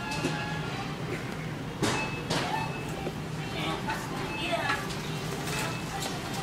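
Wire shopping cart being pushed and rolling, with a steady rumble from its wheels and two sharp knocks about two seconds in.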